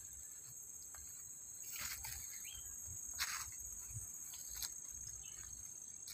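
Insects trilling in a steady high-pitched chorus, with a few soft rustles, about two and three seconds in, of someone moving through vegetation.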